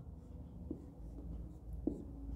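A marker pen drawing on a white board, a benzene-ring hexagon being sketched, heard as faint strokes with two light taps of the pen tip, one about a third of the way in and one near the end.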